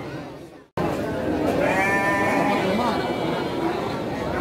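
A sheep bleating once, a drawn-out wavering call about a second and a half in, over people talking. Near the start the sound fades to silence for a moment and then cuts back in.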